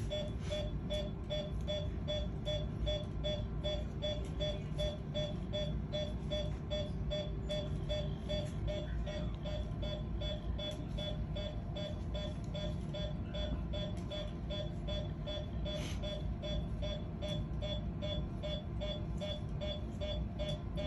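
Anaesthesia patient monitor beeping a short tone with each pulse beat, evenly at a little over two beeps a second, over a steady low hum.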